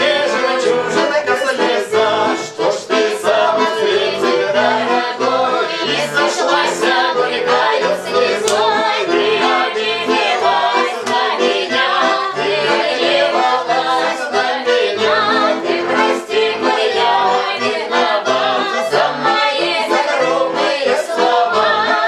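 Music: a Russian folk-style song sung to garmon (Russian button accordion) accompaniment, with a steady beat.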